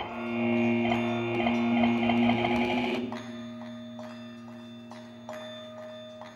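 Slow ambient music: steady held low tones, with a bright, rapidly trilling chord over them for about the first three seconds. The chord then stops, leaving the held tones and a few soft plucked or mallet-like notes.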